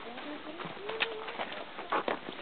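A low cooing call with a few slow gliding notes, like a dove's, with a couple of sharp clicks, one about a second in and one near the end.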